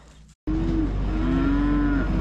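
A bovine mooing in one long call, over the steady low rumble of a tractor engine running. Both start abruptly about half a second in, after a brief gap of silence.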